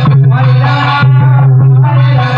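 Kirtan music: a voice singing over a steady low drone, with regular percussion strikes keeping the beat.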